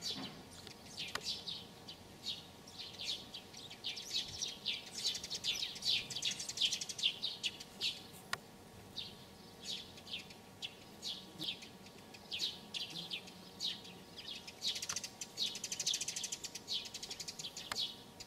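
Small songbirds chirping: quick runs of short, high, falling notes that go on throughout.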